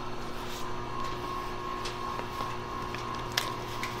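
Steady hum of running boiler-room machinery, holding a few constant tones, with a few light clicks and crinkles as fibreglass pipe insulation is handled.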